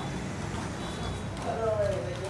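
A low steady rumble, with a person's voice calling out about one and a half seconds in.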